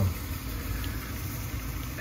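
Handheld garment steamer running: a steady hum with an even hiss of steam.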